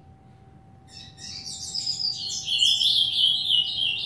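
A caged double-collared seedeater (coleiro) singing a fast, dense run of high chirping notes, starting about a second in and growing louder toward the end.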